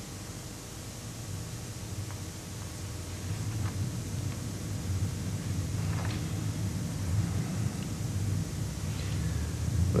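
Low, steady rumble of a vehicle, growing gradually louder over the first few seconds, with a few faint clicks on top.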